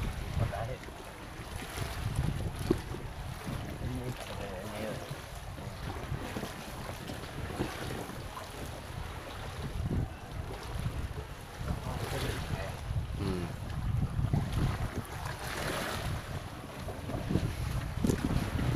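Wind buffeting the microphone over water lapping against a concrete seawall and a foam raft, a steady low rumble that swells and eases in gusts.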